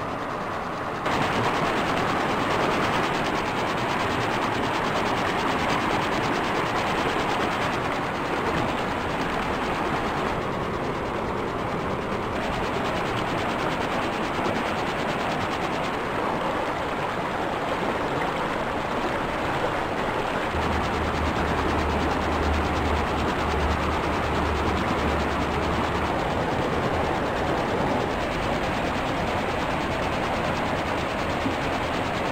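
Steady rushing of a fast, boulder-strewn mountain creek running white over the rocks, with a low rumble for a few seconds in the later part.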